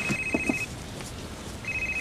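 Mobile phone ringing: an electronic ring in bursts about a second long, one fading about two-thirds of a second in and the next starting near the end.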